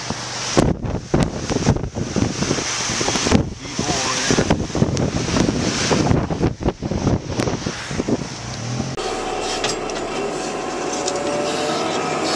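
Swollen flood river rushing, with wind gusting hard on the microphone in irregular buffets. About nine seconds in, this cuts off suddenly and gives way to a steadier engine hum heard from inside a heavy-equipment cab.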